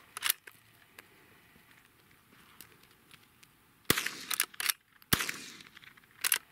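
Two shots from a lever-action .22 rifle, a little over a second apart, about two-thirds of the way in. Sharp metallic clicks of the lever being worked come between the shots, and a single click comes near the start.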